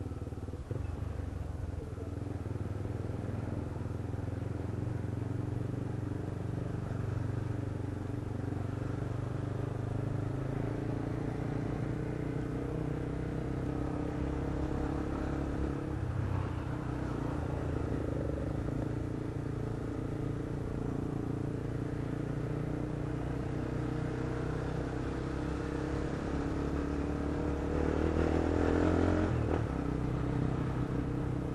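Motorcycle engine running steadily while riding in city traffic, with a rushing noise over it. It swells louder near the end as the engine picks up.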